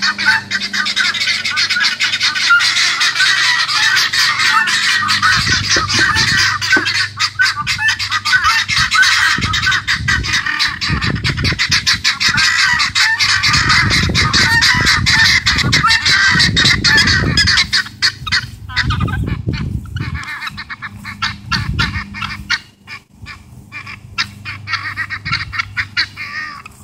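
A flock of guineafowl calling together: loud, harsh, rapid chattering calls repeated over and over, thinning out and getting quieter about three quarters of the way through.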